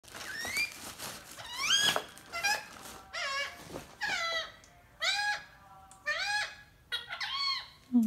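Pet green parrot making a series of short, high, squeaky calls, about eight of them, roughly one a second, most rising in pitch and then holding.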